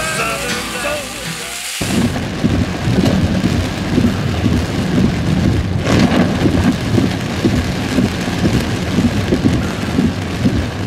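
Background music cuts off suddenly about two seconds in, giving way to heavy rain drumming on a car's roof and windshield, heard from inside the car. About six seconds in there is a brief louder crash.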